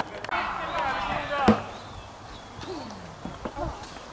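People talking, with one sharp knock about a second and a half in.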